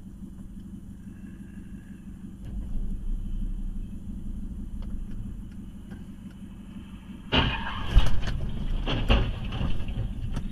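A car collision in the intersection ahead, heard from inside a stopped car with its engine idling low and steady. About seven seconds in comes a sudden loud crash, with two sharp bangs about a second apart.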